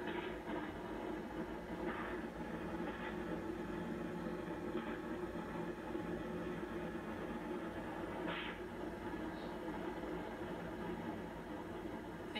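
Steady low rushing noise from a television's speaker, with a few faint brief sounds scattered through it.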